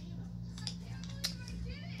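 A few faint clicks from a plastic SSD enclosure being handled as the drive and cover are fitted into it, over a steady low hum.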